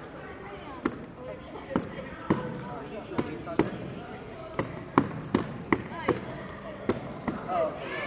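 Punches and kicks landing on a handheld padded strike shield, a dull smack with each hit. There are about a dozen strikes, irregular and often in quick pairs.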